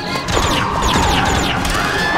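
Animated-film soundtrack: music mixed with layered sound effects, crashes and a run of quick high whistling sweeps, over a long tone that slowly falls in pitch.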